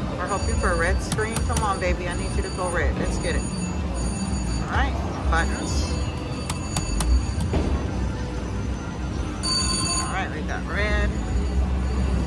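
VGT Mr. Money Bags 2 slot machine playing electronic chimes and bell-like ringing as small wins are credited, with several short strokes and a burst of high ringing near the end. Casino-floor chatter and music run underneath.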